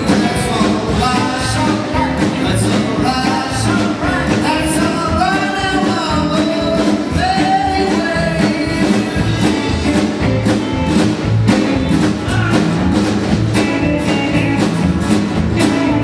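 A male singer and a rock and roll band performing live: singing over a steady beat for the first half or so, then the band playing on with little voice.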